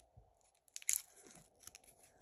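Gold foil wrapper of a Cadbury 5 Star chocolate bar crinkling in the fingers as the bar is picked up and handled: a few sharp crackles, the loudest about a second in.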